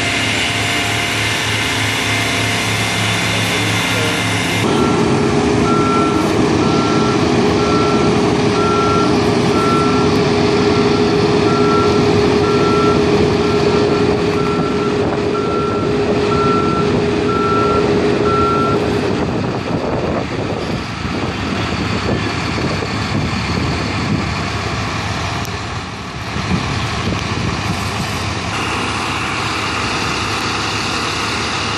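A large emergency truck's reversing alarm beeping about once a second for roughly fourteen seconds, over the steady running of the truck's engine. After the beeping stops, the engine runs on alone.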